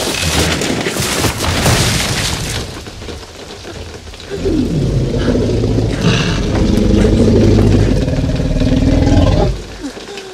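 Film sound effects of a wooden hut and its thatched roof being smashed apart, crashing and splintering for the first few seconds. Then comes a long, low growl from the Tyrannosaurus rex, from about four and a half seconds in until just before the end.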